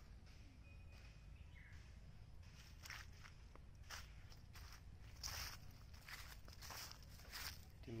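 Faint footsteps on dry fallen leaves and sandy ground, a handful of irregular leaf crunches that come more often in the second half.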